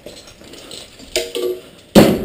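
Metal climbing hardware (carabiners and descender on a harness) jingling and rattling lightly as it is handled. A brief vocal sound comes a little after a second in, and a sharp knock comes at the very end.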